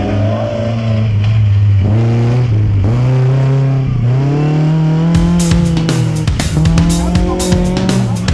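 Citroën Saxo competition car's engine revving hard, its pitch dropping briefly several times as the throttle is lifted and then climbing higher. Music with a drumbeat comes in about five seconds in.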